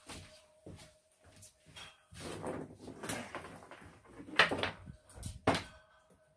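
Plugs and leads being handled and plugged into a portable lithium battery power unit: a scatter of clicks and knocks, the sharpest about four and a half and five and a half seconds in, over a faint steady hum.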